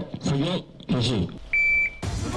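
Short bits of a man's voice, then one steady high electronic beep about one and a half seconds in, lasting under half a second.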